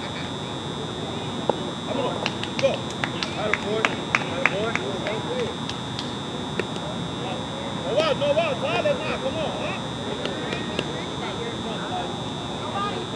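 Distant shouts and chatter of softball players across the field, heard over a steady high-pitched whine. A handful of sharp clicks come in the first half.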